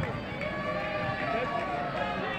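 Voices of football players and spectators calling and shouting during play, over the steady background noise of the ground.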